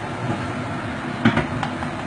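Steady running noise of loud kitchen machinery while caramel is being made. A sharp knock comes a little over a second in, and a lighter click follows.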